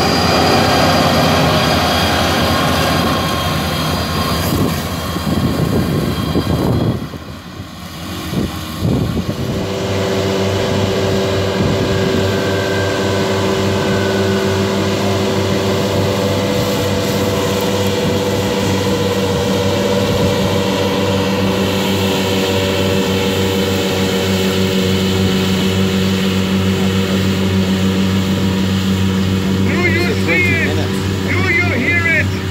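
Farm tractor diesel engines running steadily under load while driving grass mowers: first a Massey Ferguson 7718 S six-cylinder with a front disc mower, then, after a brief dip about seven seconds in, a tractor powering a front and twin side triple mower set, its engine a steady even drone.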